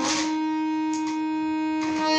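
Harmonium holding a single steady drone note with its overtones. Brief noisy puffs come at the start, about a second in, and near the end.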